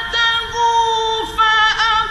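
A male Qur'an reciter chanting in the melodic mujawwad style, holding long ornamented notes that break off and resume with a new note a little past halfway. It is an old radio recording with a muffled top end.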